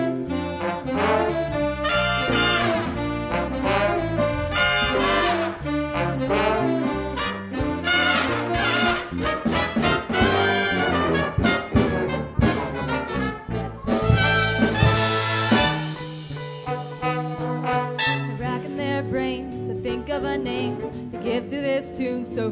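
Big band jazz playing an instrumental passage: the saxophone, trombone and trumpet sections play together over drums.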